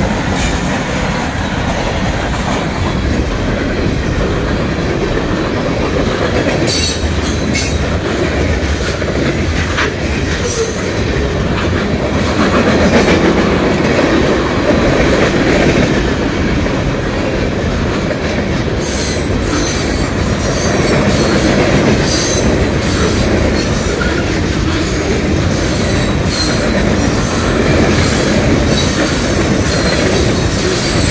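A freight train passing close by: a steady, loud rumble of steel wheels on the rails as the last diesel locomotives go past, then a long string of boxcars. Wheels clatter over the rail joints, with sharp clicks a few times early on and many more through the last third.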